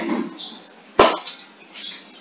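Brief, indistinct voice sounds over a band-limited video-call line, with one sharp click about a second in.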